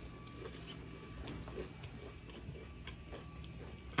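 Faint crunching and chewing of a crunchy snack chip, a scatter of small irregular clicks.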